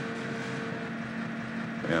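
Steady background hum and hiss with faint held tones; a man's voice starts right at the end.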